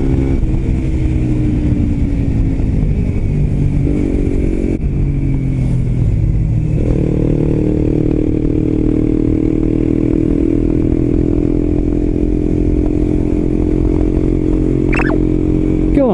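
Suzuki GSX-R125's single-cylinder four-stroke engine running through a WR'S aftermarket muffler while the bike climbs a mountain road. The note falls at first, breaks off about five seconds in, then climbs around seven seconds in and holds steady at higher revs, over a low wind rumble.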